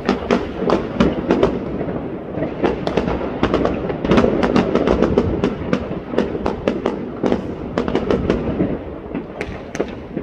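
Many fireworks and firecrackers going off at once: sharp bangs and cracks in an irregular stream, several a second, over a continuous rumble.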